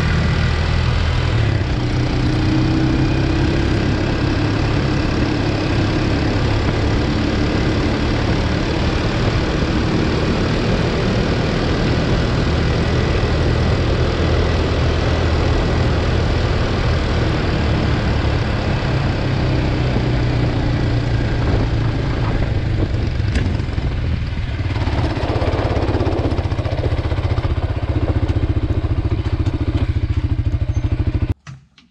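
A quad ATV's engine running steadily under way on a gravel road, heard close up from the machine, with a broad rushing noise from the chain-link drag it tows over the gravel. The engine note eases briefly about three quarters of the way through, then picks up again.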